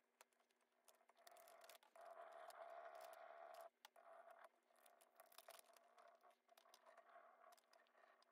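Near silence, with faint rubbing and crinkling of a rub-on transfer's clear plastic backing sheet as it is pressed and burnished onto painted wood with a small wooden stick, plus a few light clicks. The rubbing is loudest in the first half and stops abruptly before the midpoint, then goes on more faintly.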